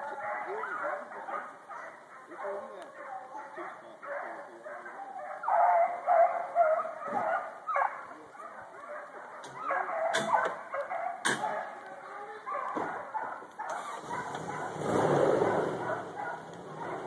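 Hunting hounds baying and yelping in chorus while running a deer through the woods. Near the end a louder rushing noise comes in.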